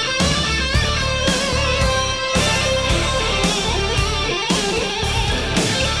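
Melodic hard rock instrumental passage: an electric guitar lead playing bent notes and vibrato over bass and drums.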